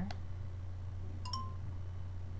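Toshiba pocket camcorder clicking as it is handled and its flip-out screen opened, then giving one short electronic beep as it powers on. A steady low hum runs underneath.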